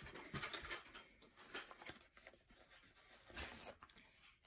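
Faint rustling of paper with a few light taps as hands move over the planner pages on the desk.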